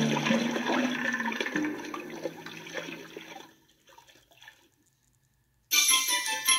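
Water sound effect for an underwater scene: a rushing, splashing wash of water that fades away over about three and a half seconds. After a short silence, a music jingle starts just before the end.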